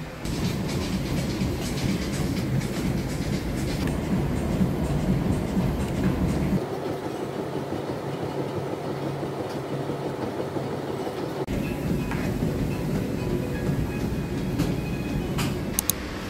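Background music over a steady low rumble. The rumble drops out abruptly about six and a half seconds in and comes back about five seconds later.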